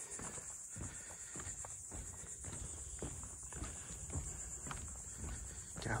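Footsteps on a wooden boardwalk, steady steps about two a second, over a continuous high-pitched buzz of insects from the surrounding marsh.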